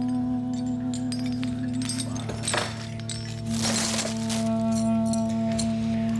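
Background music of held, sustained tones, with a bundle of metal medals on ribbons clinking and jangling together as they are handled, in short bursts about midway through.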